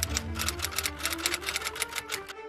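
Rapid run of typing clicks, a typing sound effect, over background music with held notes.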